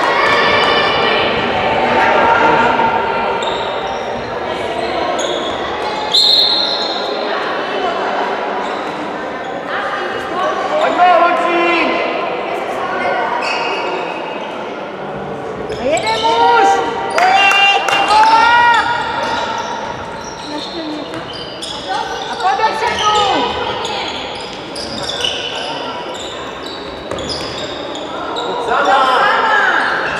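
Handball bouncing on a sports-hall floor among players' calls and shouts, with scattered knocks and voices that are loudest in the middle and near the end, echoing in the large hall.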